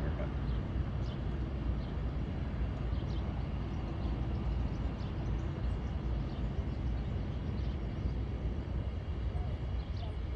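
Distant tugboat engine pushing a crane barge across the water: a steady, low rumble.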